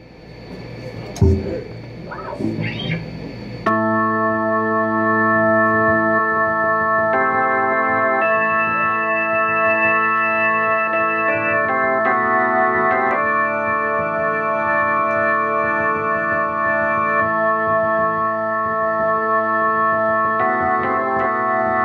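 Korg keyboard with an organ tone that comes in suddenly about four seconds in, playing held chords that change every few seconds, with no drums. Before it, a few seconds of low stage noise with one thump.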